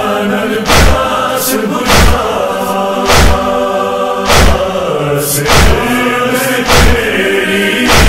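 A chorus chanting a noha, a Shia lament, in unison, with a heavy thump about every 1.2 seconds keeping the beat of matam (chest-beating).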